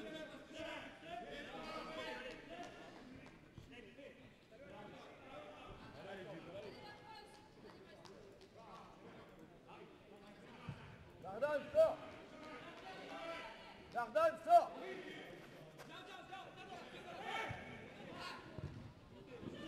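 Indoor minifootball match sound: players' voices calling out on the pitch over a low hall ambience, with two louder shouts about twelve seconds in and again about two seconds later.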